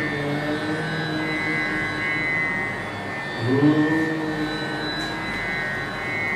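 Background music with long held notes over a steady high drone; a new note comes in with a slight rise about halfway through.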